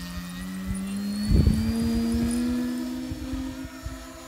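Radio-controlled balsa P-51 model plane's motor and propeller droning in flight just after take-off, one steady note that climbs slowly in pitch. A burst of low rumbling about a second and a half in is the loudest moment.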